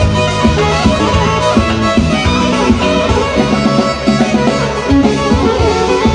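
Live band music, loud and steady with a regular beat: arranger keyboards playing with a violin.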